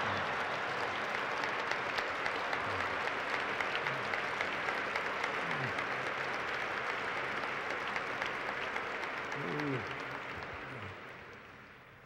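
Large audience applauding, with cheering voices in the crowd; the applause dies away over the last couple of seconds.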